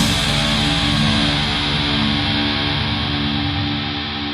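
Closing of a punk-metal rock song: the drums stop and a held electric guitar chord rings out, slowly fading, with a low note that pulses steadily.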